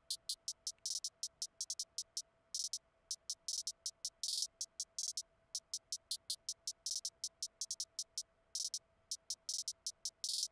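Programmed trap hi-hat from Logic Pro X's Ultrabeat drum machine playing by itself at 160 bpm: even ticks about five a second, broken every couple of seconds by short fast rolls. A faint steady hum sits underneath.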